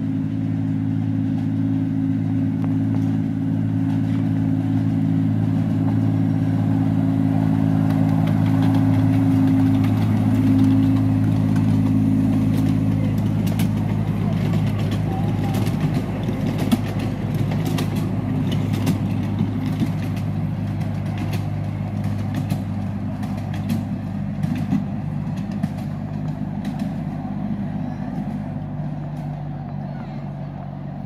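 Alan Keef No. 54 "Densil", a 10¼-inch gauge miniature diesel locomotive, running steadily as it hauls a passenger train past; its engine hum grows to its loudest about ten seconds in, then fades as the locomotive draws away. Through the second half, sharp clicks and rattles come from the coaches going by on the track.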